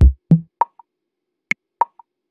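Sparse drum-machine beat of an intro jingle: a deep kick, a second low hit and a short pitched plop, then two sharp clicks about a second and a half in.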